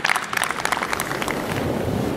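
A small crowd clapping and applauding; the clapping thins out after about a second and a half into steady wind noise on the microphone.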